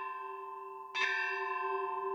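Church bell ringing: the tone of one strike rings on, then the bell is struck again about a second in and rings on.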